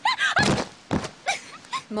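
A short cry, then a thud about half a second in as an anime character falls, with a second knock about a second in and brief voice sounds near the end.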